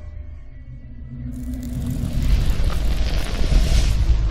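Cinematic logo-sting sound design: a deep low rumble, joined about a second in by a noisy swell that builds steadily louder toward the end.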